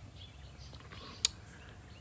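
Faint steady outdoor background noise during a pause in talking, broken by a single short, sharp click a little past the middle.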